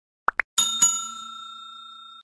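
Button-click sound effects: two quick rising pops, then a bright bell chime struck twice in quick succession that rings on and fades away.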